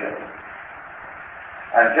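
A man lecturing: one word, a pause of over a second with steady background hiss, then he speaks again near the end.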